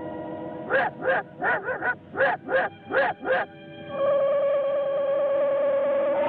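Sci-fi film soundtrack: a run of about eight short, swelling tones in quick succession, then a steady warbling tone held from about four seconds in.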